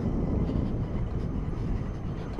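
Motor scooter riding along a rough, broken mountain road: a steady low rumble of engine and road noise, with wind buffeting the microphone.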